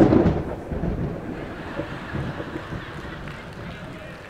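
A congregation in a large sanctuary applauding, with voices mixed in, loud at first and slowly dying away.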